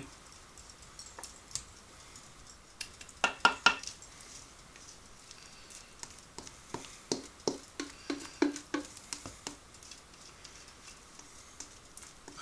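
A utensil scraping and knocking thick batter out of a stainless steel mixing bowl into a metal loaf pan. There is a louder cluster of clinks about three seconds in, then a run of quick taps from about six to nine and a half seconds.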